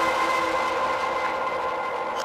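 Ambient electronic drone: several steady metallic tones held together and slowly fading out.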